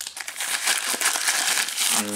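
Plastic postal mailer bag crinkling and crackling as it is handled and shaken.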